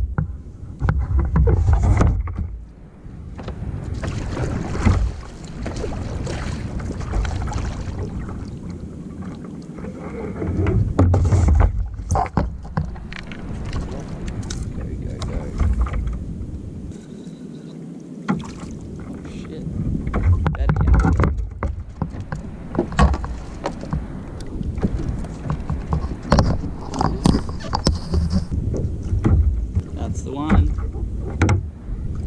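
Water lapping and knocking against a kayak's hull on a gentle swell, with irregular knocks and clicks from a fishing rod and reel being handled.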